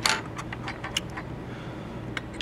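A string of light, sharp clicks and ticks from small tools and parts being handled at a workbench, most of them in the first second, over a steady low hum.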